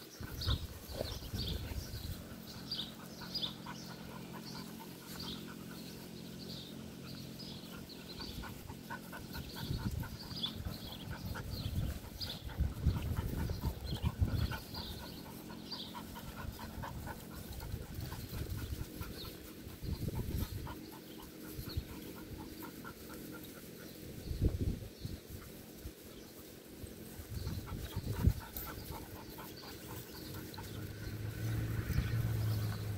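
A dog panting quickly, about two breaths a second, fading out about halfway through, with low bumps and rustles here and there.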